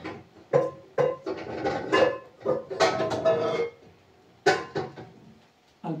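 Metal cooking pot and lid clattering as they are taken out and handled: a run of uneven clanks and knocks with short metallic ringing.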